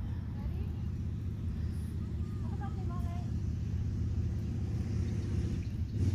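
Wind buffeting the phone's microphone: a steady, rough low rumble that grows a little louder near the end.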